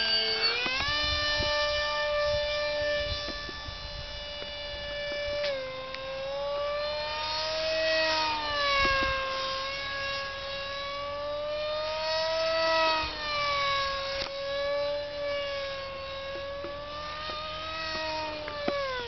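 Jamara Delta Roo RC foam jet's electric ducted fan whining at high throttle. The pitch rises just after the hand launch, then swells and bends up and down as the model flies past, with wind buffeting on the microphone in places.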